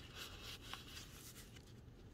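Faint rustling of paper handled by hands, a small card slid against the paper pocket and pages of a journal, loudest in the first half second.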